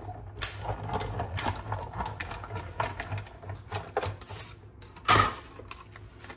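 Hand-cranked die-cutting machine rolling a plate sandwich of metal dies and cardstock through its rollers: a run of irregular mechanical clicking and rumbling, with one sharp, loud knock about five seconds in.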